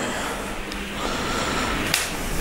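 Handling noise from a handheld camera being jostled as something is moved by hand: a steady rustling hiss, with a faint steady tone in the second half and a short click near the end.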